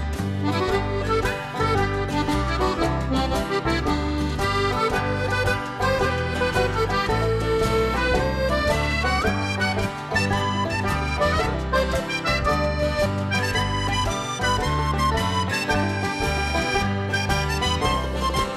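Instrumental break of a traditional folk tune, with an accordion playing the melody over a steady bass line and rhythm accompaniment.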